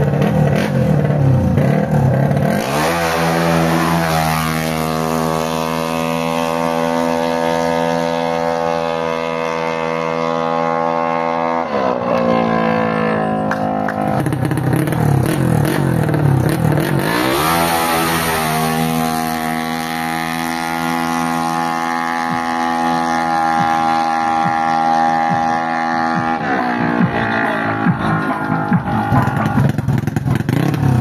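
Yamaha Nmax/Aerox-engined drag scooter with an open CVT, revved on the start line: the engine climbs to high revs over about two seconds and holds a steady note for about eight seconds before dropping back. It then revs up and holds steady a second time.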